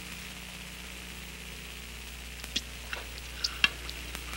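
A fork tapping and scraping on a china plate while chasing a pea, a few faint short clicks in the second half, over a steady hiss and low hum.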